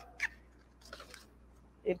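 Quiet handling noises as a paper sheet is lifted out of a plastic box: one short click near the start, then faint rustles and taps.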